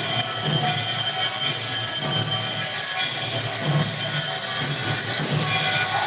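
Temple aarti clangor: metal bells, gongs and hand cymbals ringing together without a break, with a low beat pulsing underneath.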